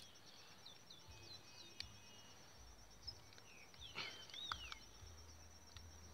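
Quiet outdoor ambience: a steady high insect trill, with a few faint bird chirps about a second in and a clearer bird chirp about four seconds in.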